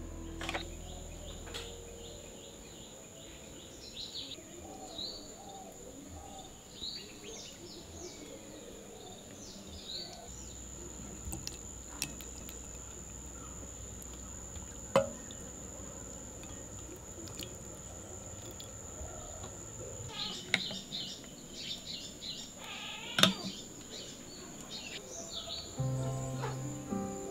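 Birds chirping in quick runs of short notes, busiest in the first seconds and again over the last few, above a steady high-pitched whine. A few sharp taps stand out, the loudest near the end.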